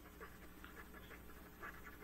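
Faint, short scratching strokes of a felt-tip marker writing on paper, over a low steady room hum.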